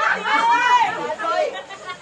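People talking, with a lively, high-pitched voice in the first second.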